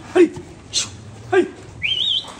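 Pigs giving short squealing calls, three brief ones with falling pitch about half a second apart, followed near the end by a higher rising whistle-like squeal.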